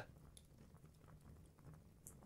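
Near silence: faint room tone with one tiny tick.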